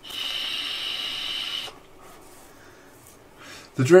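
A person exhaling a big cloud of vapour in one hard breath: a steady hiss that lasts under two seconds and stops suddenly.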